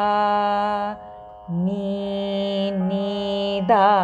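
A singer sounding lower-octave (mandra sthayi) notes of Carnatic music on a sustained vowel. A long held note, then after a short break a second held note a little lower, and a brief wavering slide near the end.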